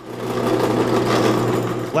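Drill press running, its bit drilling into a part held on the table: a steady motor hum with a bright cutting hiss over it, building up just after the start and stopping at the end.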